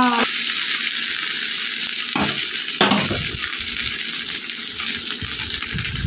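Chicken fried rice sizzling in an aluminium kadai while a steel spatula stirs it, with a couple of scrapes of the spatula against the pan about two and three seconds in.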